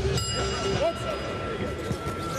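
Boxing ring bell struck once, its high, sustained ring carrying on over voices in the arena.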